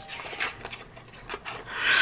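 Breathy huffs of a person's breath during a pause between phrases, ending in a louder intake of breath just before speech resumes.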